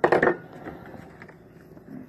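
Kitchenware being handled on a counter: a short knock near the start, then faint scattered clicks over low room noise as a glass measuring cup is got ready.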